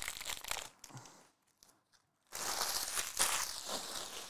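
Foil wrappers of trading-card packs crinkling as the packs are handled and torn open. The crinkling breaks off for about a second in the middle, then comes back more densely.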